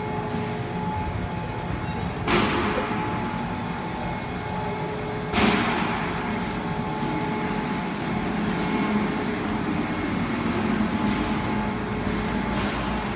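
PVC sheet extrusion line running, a steady mechanical hum with a few held tones. Two sudden loud bursts about three seconds apart each fade out over roughly a second.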